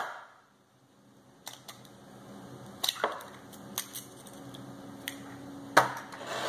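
Faint clicks and taps of an eggshell being broken open by hand over a small glass dish, with the raw egg dropping in. They start about a second and a half in, with a sharper click near the end.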